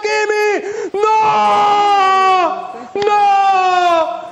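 A man's drawn-out cries of dismay: three long held vocal wails, the middle one longest, each sliding down in pitch as it ends.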